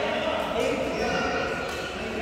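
Badminton doubles play in a large, echoing sports hall: players' footfalls on the court floor and racket hits on the shuttlecock, with distant voices from other courts.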